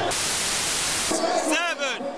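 A burst of hissing static that starts and stops abruptly, lasting about a second, followed by voices.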